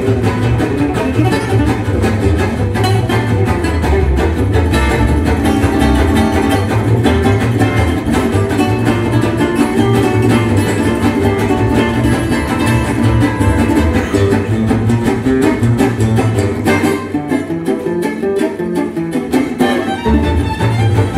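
Live gypsy jazz: an acoustic guitar solo over strummed rhythm guitar and plucked upright double bass, without the violin. Near the end the bass drops out for a few seconds while the guitars carry on.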